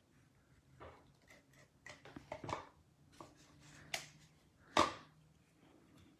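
Hands handling and pressing cardstock on a craft mat: scattered soft paper rustles and small taps, the loudest a sharp tap almost five seconds in.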